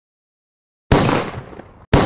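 Two sudden booming impact hits, about a second apart, each dying away over roughly a second: an edited intro sound effect over the opening title cards.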